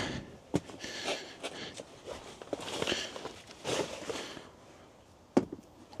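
Rustling and scuffing of waders being pulled off, with shuffling steps on paving stones and a few small knocks; a single sharp click comes about five seconds in.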